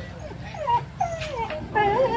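Small dog whining, in several short whimpers that bend and fall in pitch.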